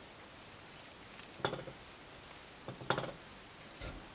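A metal fork clinking and scraping against a ceramic plate in about three short strokes, spread over a couple of seconds, while it cuts into the soft cheese helva.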